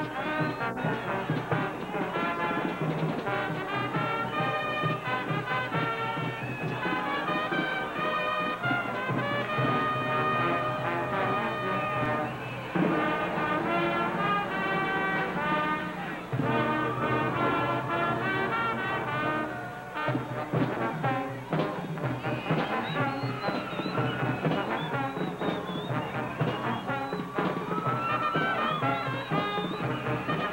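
Brass-led band music playing a lively tune, with steady rhythmic accompaniment.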